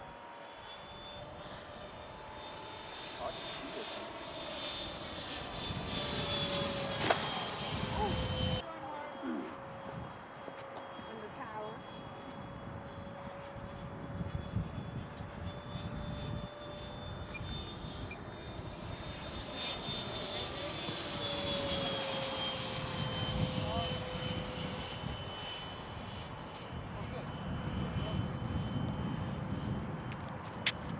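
Electric ducted fan (90mm EDF, 1750Kv motor) of a SebArt Fiat G.91 RC jet whining in flight, a steady high whine. Its pitch drops as the jet passes by, once about seven seconds in and again over a few seconds from about twenty seconds in.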